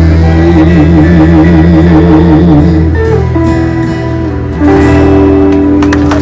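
Live country band playing: electric and acoustic guitars with a fiddle, holding long notes that shift to new pitches about halfway through and again near the end.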